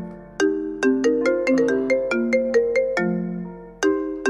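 Mobile phone ringtone for an incoming call: a repeating tune of short, bright notes, the phrase starting over near the end.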